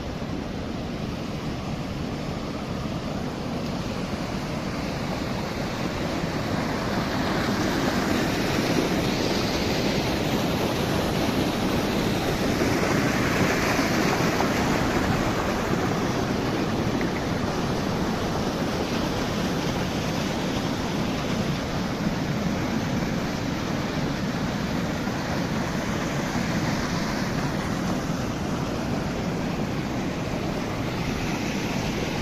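Water rushing over the outflow weir of a spring-fed pond: a steady wash of white water that grows louder through the middle and then eases off a little.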